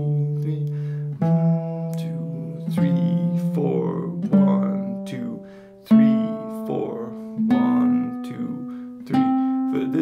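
Nylon-string classical guitar playing an ascending C major scale in slow half notes: one plucked note held and left ringing about every second and a half, each a step higher than the last.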